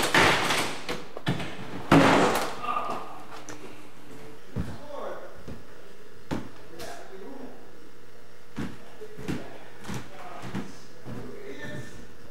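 Two heavy door bangs about two seconds apart, then scattered light knocks and footsteps on a wooden floor.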